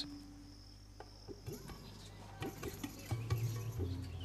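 Faint outdoor ambience: a steady high insect trill for about the first second, then scattered small clicks and ticks over a steady low hum.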